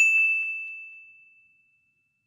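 A single bright ding sound effect: one struck high tone that rings and fades away over about a second and a half. It is the chime of a '+1 Like' button animation.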